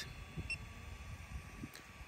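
A single very short, high electronic beep about half a second in, over faint background hiss.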